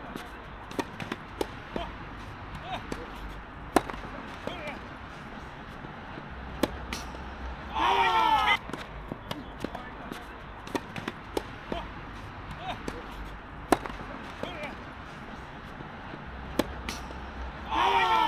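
Doubles tennis rally: irregular sharp pops of racquets striking the ball and the ball bouncing on the hard court. Two short, louder calls with a wavering pitch cut in, one about halfway through and one at the end.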